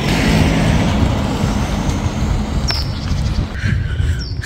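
A car driving by on the street, its engine and tyre noise strongest in the first second or so and then fading, over low wind rumble on the microphone. A brief click near the middle.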